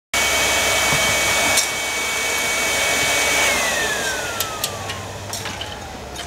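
A blower motor running with a steady whine and rush of air, switched off about three and a half seconds in, its whine falling in pitch as it spins down, with a few light clicks near the end.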